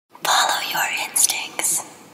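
A person whispering: a breathy, unvoiced voice with sharp hissing s-sounds.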